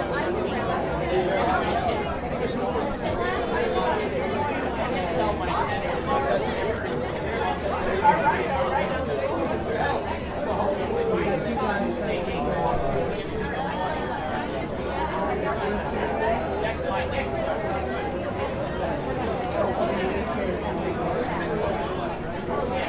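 Several people talking at once on the street, their voices overlapping into an unintelligible chatter, with one brief louder moment about eight seconds in.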